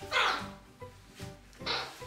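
Male eclectus parrot giving two harsh squawks, one just after the start and one near the end, over background music.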